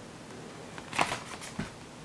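Plastic DVD case being handled as it is pulled out of its packaging: faint rustling, with a sharp click about a second in and a softer one shortly after.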